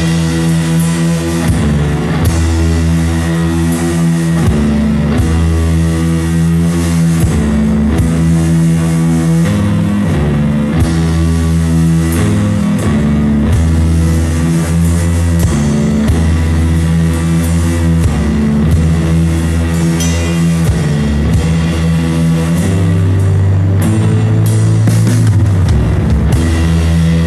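Lo-fi garage rock song playing: electric guitar chords over a heavy bass line and a driving drum kit, loud and even throughout.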